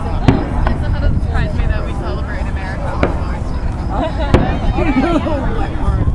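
Fireworks going off in the distance: several sharp bangs, the loudest a little after four seconds in, over the chatter of onlookers.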